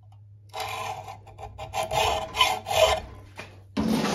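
Long flat hand file worked back and forth across a knife's wooden handle held in a vise: dry rasping strokes begin about half a second in, roughly two a second. A faint steady low hum runs underneath.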